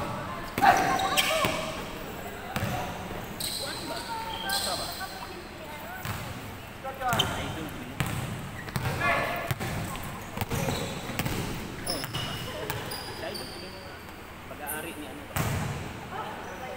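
Basketball bouncing on an indoor court during a game, with repeated short thuds, sneakers squeaking in short high-pitched bursts, and players calling out.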